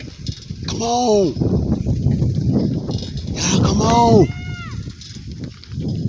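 Two drawn-out wordless vocal calls, each rising then falling in pitch, about three seconds apart. A shorter, higher call follows just after the second. Wind and rolling noise run under them from a phone filming on a moving bicycle.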